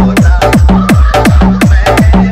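Indian DJ hard-bass remix of an old Hindi film song: heavy kick drums with a deep bass that drops sharply in pitch on each hit, about two a second, with sharp percussion between and a melody over the top.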